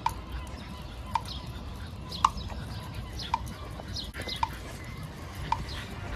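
Pedestrian crossing signal's locator tone: a short chirping tick repeating evenly about once a second, six times, over low street background noise.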